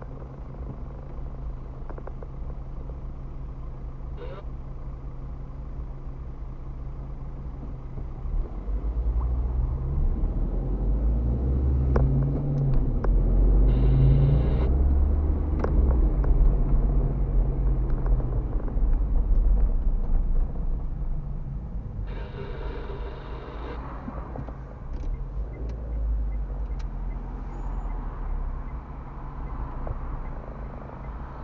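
Car engine and cabin noise heard from inside the car: a steady low idle while stopped in traffic, then, about eight seconds in, a rising, louder engine and road noise as the car pulls away and accelerates, easing to a steadier cruise in the last third.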